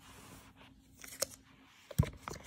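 Quiet handling of a smartphone in its cardboard box: a faint rustle, a few light clicks about a second in, and a sharper click at the end as the phone is lifted from the box tray.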